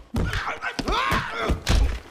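A scuffle in an animated cartoon: a series of heavy thuds, the loudest near the end, mixed with short grunts and yelps.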